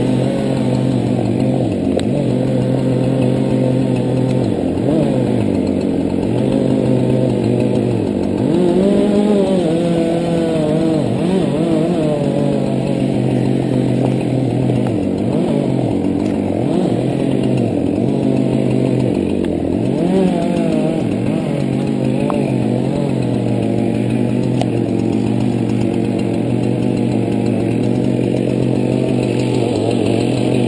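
Chainsaw running continuously while cutting into a tulip poplar trunk, its engine note holding steady with several brief dips in pitch.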